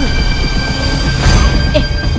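Sustained high-pitched whine over a deep steady rumble, a dramatic sound effect, with a short burst of hiss just past a second in.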